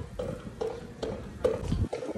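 Gusty wind buffeting the microphone, rumbling and crackling, as a storm builds.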